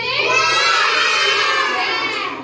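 A group of young children singing together at full voice, close to shouting. Their voices rise at the start into one long held note.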